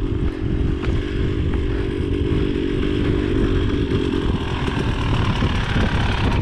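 Trail motorcycle engine running steadily, its note holding even for about four seconds before fading, over a constant low rumble.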